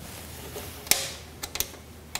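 Small metal clicks and taps as nuts are put on the screws of a bandsaw worklight's mounting base by hand: one sharp click about a second in, then a few lighter ones.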